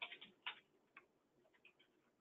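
A few faint, separate clicks of computer keyboard keys being typed, about one every half second and then two softer ones near the end.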